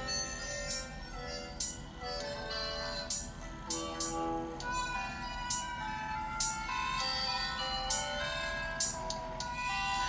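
Background music from a recipe video, played through a phone's speaker: a melody of stepped, held notes over a light, regular beat.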